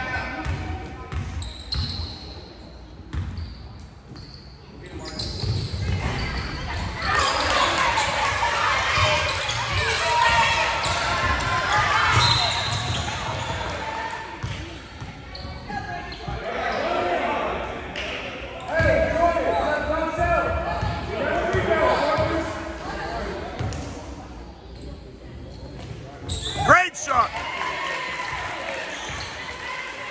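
A basketball bouncing on a hardwood gym floor amid the talk of spectators and players, with the sound filling a large hall. Near the end there is one short, sharp sound, the loudest moment.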